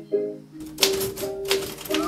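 Music with short melodic notes, then from a little over half a second in a Royal manual typewriter's keys are struck several times in quick succession, the music still faintly under the clacking.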